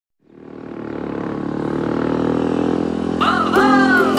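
Royal Enfield Bullet single-cylinder engine idling steadily, fading in over the first couple of seconds. Music with a voice comes in near the end.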